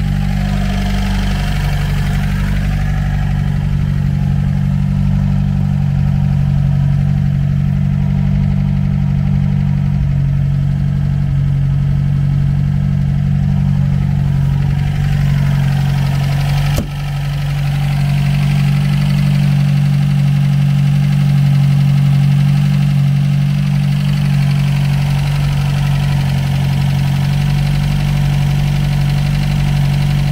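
The 1953 MG TD Mark II's 1250 cc XPAG four-cylinder engine idling steadily, soon after a cold start and not yet warmed up. There is a brief break in the sound about halfway through.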